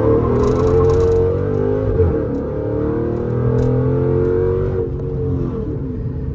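Dodge Charger SRT8's 6.1-litre Hemi V8 under full-throttle acceleration in a 0-60 run, heard from inside the cabin. The engine pitch climbs, drops at a gear change about two seconds in, climbs again, then falls away near the end.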